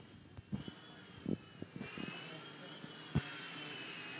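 Miniature remote-control toy helicopter flying, its small electric motor and rotor giving a high whine that wavers in pitch and grows louder about two seconds in. A few dull thumps come through, the loudest about three seconds in.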